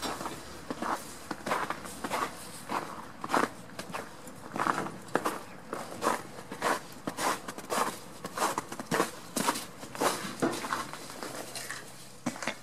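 Footsteps crunching through snow at a steady walking pace, one short crunch with each step.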